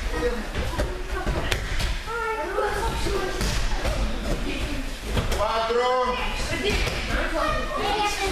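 Bodies thudding and slapping onto judo mats as children roll and fall, with several children's voices chattering and calling out.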